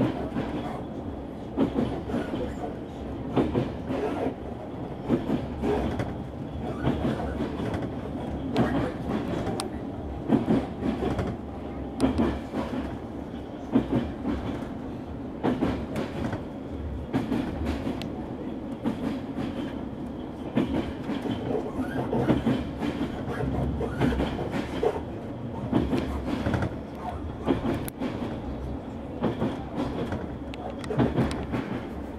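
Train running, heard from inside a carriage: a steady rumble with repeated clicks as the wheels pass over rail joints.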